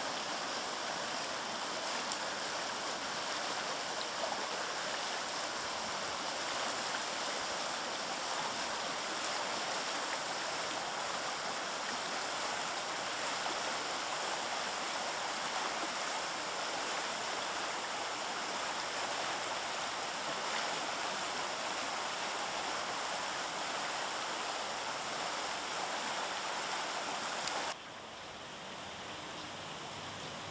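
A shallow, fast-flowing river rushing steadily over stones and rocks. It cuts off abruptly about two seconds before the end, leaving a quieter steady hiss.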